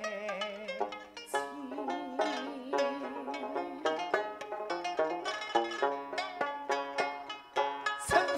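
Sanxian and pipa playing a quick plucked instrumental interlude between sung lines of a Suzhou pingtan-style ballad, with many short, ringing notes.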